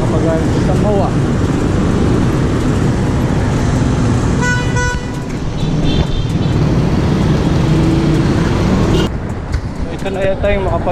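Dense traffic noise from idling motorcycles and cars waiting at a stoplight. A single vehicle horn honks for about half a second a little over four seconds in. The din drops about nine seconds in.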